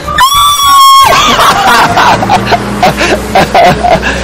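A high-pitched squeal held steady for just under a second near the start, then background music with a steady low bass line under laughter.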